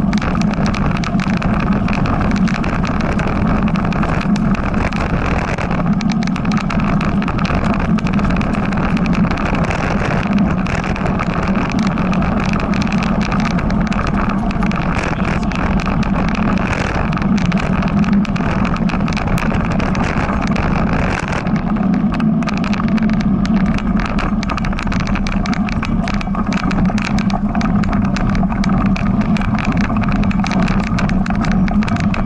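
Mountain bike rolling over a rough dirt trail, heard from a camera mounted on the bike: a steady rumble of tyres and wind, with constant small rattles and knocks from the bike and mount.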